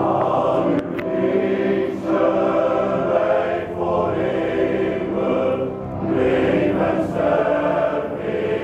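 Men's choir singing in several voice parts, coming in at the very start and moving through sung phrases with short breaks about every two seconds.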